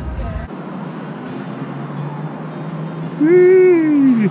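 A steady rushing noise, then about three seconds in one long, loud whoop from a person's voice that rises slightly and falls away at the end.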